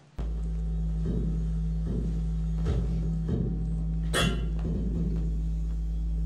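Sound art piece made from a continuous tone streamed over the internet and decoded without error correction: a steady low drone that cuts in abruptly, broken by irregular glitchy pulses about once a second and one sharper crackle about four seconds in. The breaks and glitches are lost and reordered network packets.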